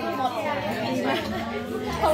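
Voices talking over the background chatter of other diners in a restaurant.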